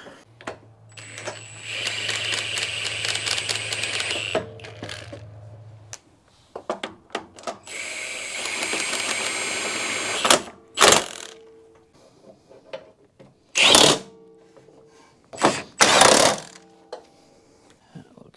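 Cordless power driver running bolts into a truck's front bumper, two runs of about three seconds each with a steady whine, followed by several sharp knocks.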